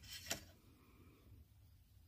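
Near silence: room tone, with one faint, brief click about a third of a second in.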